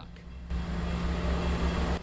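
Transit bus engine running at the curb: a steady low rumble with an even rushing noise that comes up about half a second in.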